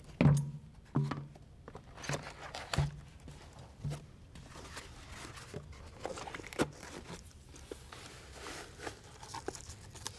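Handling noise as an AED is worked into a soft fabric carrying case: rustling and crinkling of the case, with several short knocks in the first few seconds and one more about halfway through.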